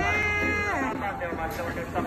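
A single drawn-out vocal call, held on one pitch and then sliding down, stopping under a second in; fainter voices follow.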